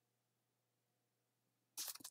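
Near silence: faint room tone, with a brief soft sound near the end.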